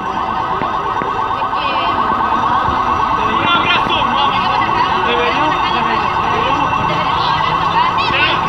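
Sirens and car alarms sounding together over street traffic: a steady, wavering wail, with a few quick rising chirps on top.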